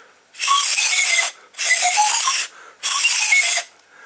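Pan pipes made from paper drinking straws, blown three times. Each blow is about a second long and is mostly airy breath noise with only faint notes sounding through.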